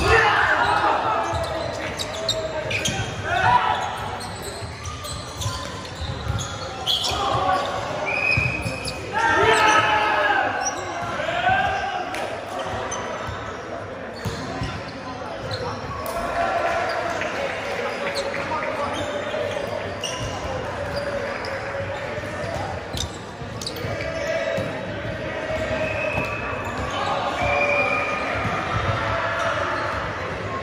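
Indoor volleyball match in a large echoing hall: players shouting and calling to each other through the rally and between points, with the sharp smack of ball hits and the ball bouncing on the wooden floor.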